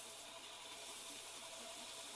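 Belt grinder sanding a small wooden inlay piece at low speed, heard only as a faint steady hiss.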